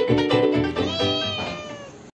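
A cat's meow over plucked, rhythmic background music. The meow comes about a second in, rising and then falling in pitch, and fades as the music trails off near the end.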